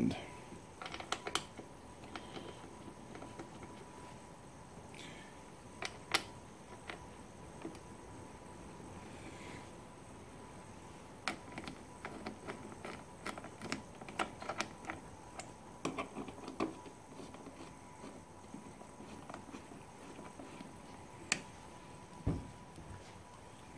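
Scattered metallic clicks and taps of a bolt-on cover bracket and its bolts being fitted by hand, with a run of quick clicks in the middle as a socket wrench turns the bolts in.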